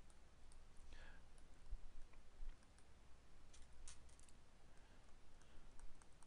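Faint, scattered clicks and taps of a stylus pen on a tablet screen as words are handwritten, with a small cluster of clicks past the middle, over a low steady hum.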